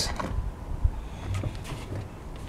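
A spanner tightens an ISIS crank extractor against the axle bolt of a unicycle crank. It gives a sharp metal click a little under a second in, then a few faint clicks and scrapes, over a low rumble.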